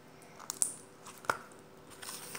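Slime squeezed and worked between the fingers, giving a few small sharp pops or clicks, two close together about half a second in and one more a little after a second.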